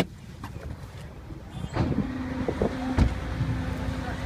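Low rumble of idling vehicles heard from inside a car, with a sharp click at the start. About halfway through, a steady low hum sets in and the street noise grows louder.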